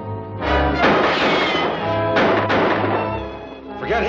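Dramatic orchestral film-serial score that breaks into loud, crashing chords about half a second in and surges again about two seconds in.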